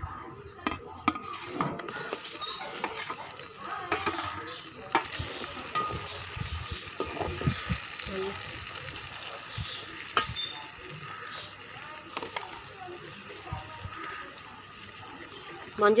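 Onions and tomatoes frying in an aluminium kadai, with a metal slotted ladle scraping and clinking against the pan as they are stirred.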